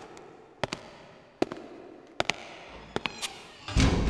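A string of sharp, irregular cracks and pops, about eight to ten in under four seconds, over a steady hiss. Near the end, loud music with a strong bass comes in.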